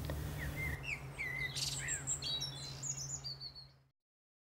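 Small birds chirping and singing: a run of short high whistled notes and quick slides, over a low steady hum. The sound fades and cuts off to silence just before the end.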